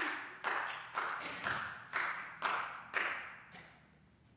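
A held musical chord cuts off at the start, followed by slow hand clapping from a few people, about two claps a second. Each clap rings briefly in a reverberant hall, and the clapping dies away near the end.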